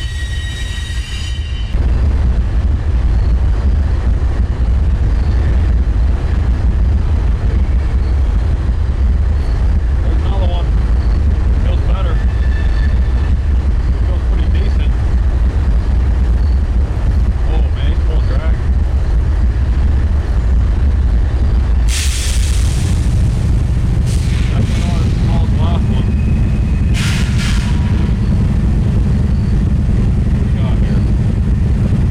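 Loud, steady low rumble of wind on the microphone over a flowing river, with a few faint ticks and two brief sharper noises in the last third.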